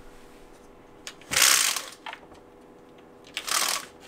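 A window being pushed open: two short scraping rushes, each about half a second long, the second near the end.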